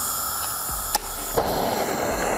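Butane gas torch on a screw-on canister: gas hissing from the nozzle, a single click about a second in, then the flame lights and burns with a fuller rushing sound.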